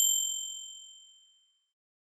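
Notification-bell 'ding' sound effect: one strike ringing out in a few high, clear tones and fading away over about a second and a half.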